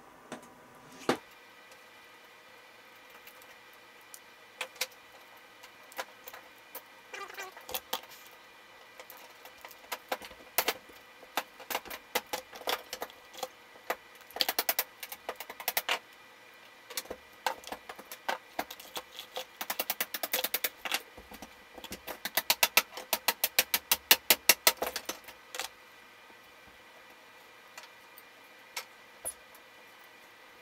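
Small sharp clicks and snaps of a salvaged circuit-board choke being pried apart by hand for its copper winding, scattered at first and coming in fast runs of about ten clicks a second in the middle and again near the end.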